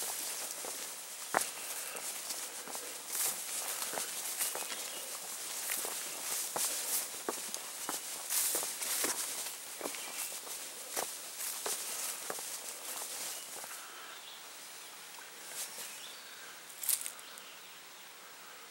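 A hiker's footsteps through tall grass, with irregular rustling and clicks as the boots and legs brush the grass. The steps die away about three-quarters of the way through, leaving only faint rustles.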